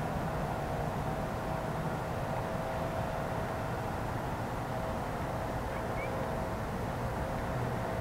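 Steady low background noise with a faint continuous hum and low rumble, and no distinct sound events.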